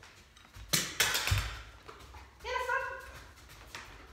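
Loud scuffling and rustling for about a second, then a short high-pitched whine from a German Shepherd about two and a half seconds in.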